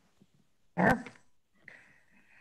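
A woman's single short "yeah" over a video call, about a second in, beginning with a sharp click.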